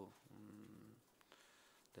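A man's low, drawn-out hesitation hum ("mmm") for about the first second, then near silence with room tone until he speaks again at the very end.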